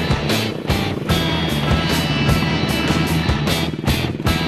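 Background rock music with a steady drum beat.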